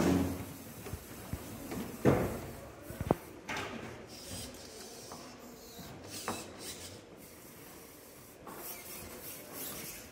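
Small wheeled robot driving and turning on the arena floor: a few sharp clicks and knocks with intermittent bursts of hissy motor and wheel noise.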